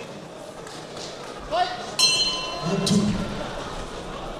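A boxing ring bell sounds once for just under a second, signalling the start of a round. Voices can be heard around it.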